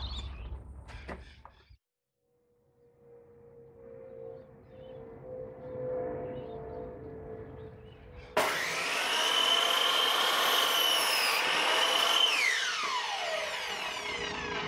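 Ozito mitre saw cutting through a dried tree branch: the motor and blade cut in suddenly about halfway through with a loud, high whine, which falls in pitch near the end as the blade winds down. Quieter handling sounds come before it.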